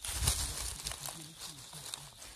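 Dry pine needles and fallen leaves rustling and crackling as a hand pushes through the leaf litter, loudest at the start and settling into lighter crackles.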